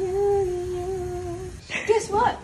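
A woman humming one long held note, breaking off about a second and a half in.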